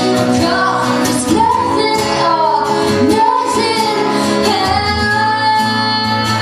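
A woman singing live with long held notes over a strummed acoustic guitar.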